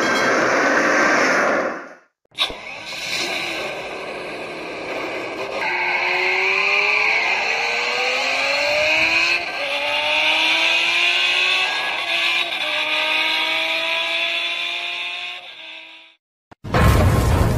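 Car engine accelerating hard through the gears in a drift sound effect. Its pitch climbs in three long runs with a drop at each shift, over a steady hiss of tyre squeal. A short burst of other noise cuts off about two seconds in, before the engine starts.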